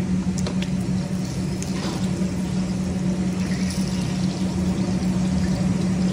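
Steady low mechanical hum with a constant droning tone, the running noise of kitchen equipment, with a few faint ticks in the first two seconds.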